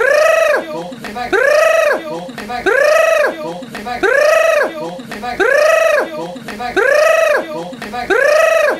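A person's voice making a high, drawn-out "grrr" cry that rises and falls in pitch, the same short cry repeating identically about six times, as if looped.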